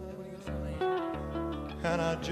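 A studio band playing an instrumental stretch of a take, guitar to the fore, chords changing about every half second, with a louder attack near the end.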